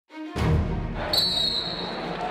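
A referee's whistle gives one long blast starting about a second in, signalling the start of the wrestling bout. Under it is gym noise with low thuds.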